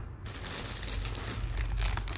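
Clear plastic clothing bags crinkling and rustling as they are handled and lifted, in an irregular run of small crackles.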